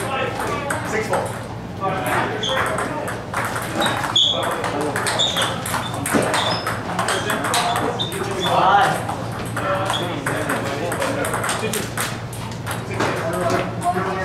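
Table tennis balls clicking off paddles and tables in quick, irregular succession, from rallies on several tables at once, with indistinct voices and a steady low hum beneath.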